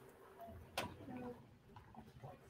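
Very quiet room sound with a single faint click a little under a second in and a few faint, brief murmurs, as a drink is sipped from a paper cup.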